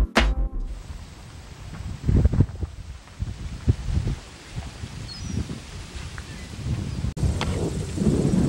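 Outdoor ambience dominated by wind buffeting the microphone in irregular low gusts, with a brief faint bird chirp about five seconds in. Background music cuts off in the first half second.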